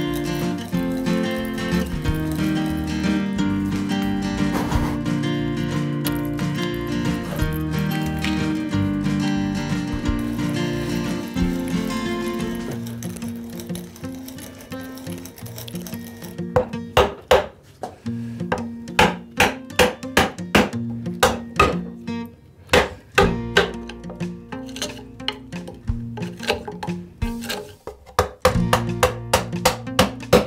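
Background acoustic music for the first half. From about halfway, a fast, irregular run of sharp wooden knocks sounds over the music: a mallet driving a chisel into a hardwood timber to chop out a mortise.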